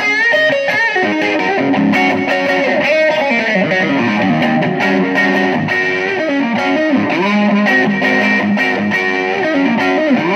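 Telecaster-style electric guitar, fitted with a Musiclily ashtray bridge and Gotoh In-Tune saddles, played through high-gain distortion: a continuous run of licks with several string bends.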